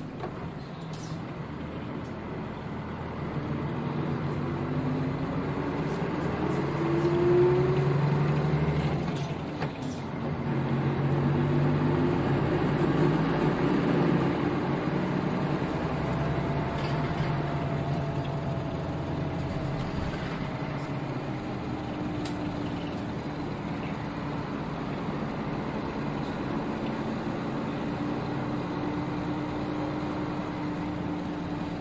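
Nissan Diesel KL-UA452KAN city bus heard from on board while driving. The diesel engine note climbs as the bus pulls away, breaks off briefly about nine seconds in, climbs again, and then settles into a steady run.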